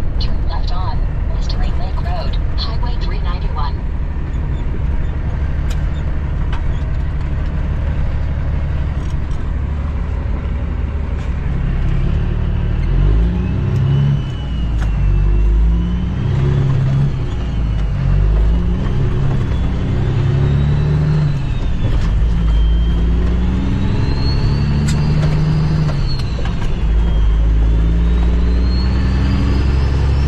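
Cummins ISX diesel engine of a 2008 Kenworth W900L semi-truck, heard from inside the cab while driving. About twelve seconds in, it starts accelerating through the gears: its pitch climbs and drops again with each shift, and a faint high whine rises and falls along with it.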